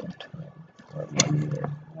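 A man's voice making a drawn-out, steady-pitched hesitation sound in the second half, with a single sharp mouse click just after a second in.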